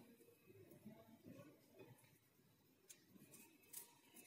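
Near silence, with faint rustling and a few soft clicks from hands passing a beading needle and thread through seed beads.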